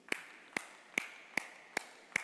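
One man clapping his hands slowly and evenly, five single claps about 0.4 seconds apart, each followed by a short ring of the hall: a slow, mocking applause.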